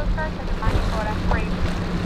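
Outboard-powered center-console boat running through choppy inlet water. A low rush of wind and water sits under a steady engine hum, with short high calls or voices heard over it.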